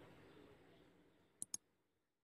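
Two quick click sound effects, a tenth of a second or so apart, about one and a half seconds in, over faint background noise that fades away.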